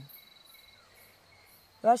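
Faint insects chirping in the background: a steady high-pitched trill with a lower chirp pulsing a few times a second beneath it.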